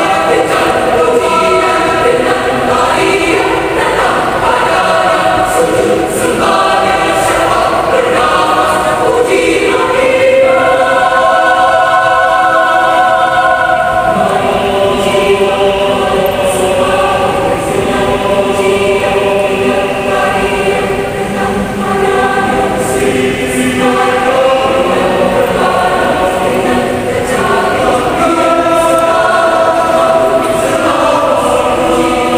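Mixed youth choir singing a sacred song in several parts, with long held chords near the middle.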